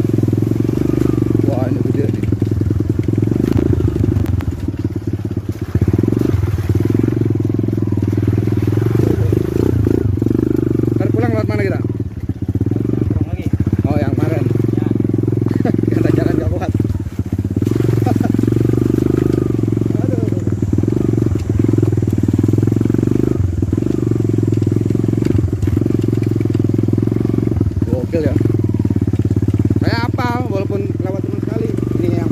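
Motorcycle engine running steadily while riding over a rough, muddy dirt road: a low, even drone that dips briefly about twelve and seventeen seconds in. Indistinct voices come and go over it.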